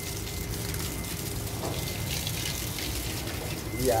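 Garden hose running, a steady stream of water pouring from its open end and splashing onto plants and soil.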